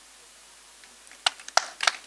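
A quiet moment, then scattered hand claps from a crowd beginning about a second in, sharp and irregular, a few per second.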